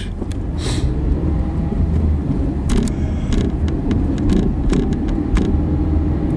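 Car driving, heard from inside the cabin: a steady low engine and road rumble, with a few short knocks and clicks over the middle of the stretch.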